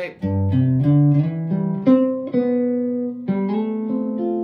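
Clean Telecaster-style electric guitar playing a single-note melodic line. A quick run of picked notes settles into held, ringing notes in the second half. The line leads from C toward the F chord, aiming at its third.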